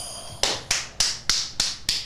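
A run of about six sharp finger snaps in an even rhythm, roughly three a second, beginning about half a second in.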